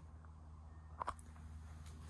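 Quiet room tone with a steady low hum, and one brief click about halfway through.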